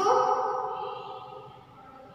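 A voice holding one drawn-out syllable at a level pitch, starting suddenly and fading away over about a second and a half.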